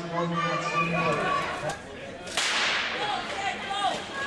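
Starting gun fired once at the start of a short-track speedskating race, a single sharp crack about two seconds in that echoes around the ice rink. Voices go on around it.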